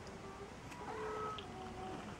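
Maine Coon cat meowing, a soft short call about a second in.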